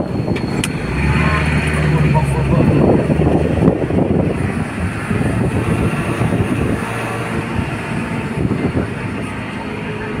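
Engine and road noise from a moving vehicle on a winding mountain road. A steady low engine drone holds for two or three seconds starting about a second in, then gives way to an even rumble of road noise.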